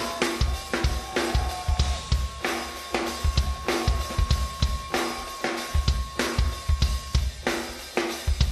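Rock band playing live in an instrumental passage: drum kit driving a steady beat of kick drum, snare and cymbals, with bass underneath. A single high tone is held over the beat and stops near the end.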